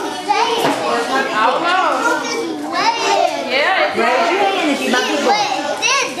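Many young children's voices at once: chatter, calls and high-pitched shouts overlapping one another in a steady din.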